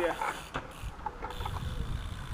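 Bicycle rolling over wet tarmac toward the camera, with a low rumble that builds through the second half.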